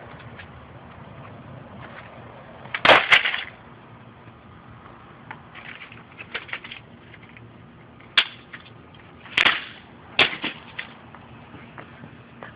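Computer parts being struck and smashed on a concrete path: a loud crack about three seconds in, light clatter around six seconds, then three more sharp cracks near the end.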